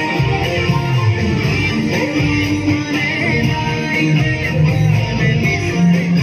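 Ibanez electric guitar playing an improvised lead solo, picked single-note melody lines over a full, continuous musical texture.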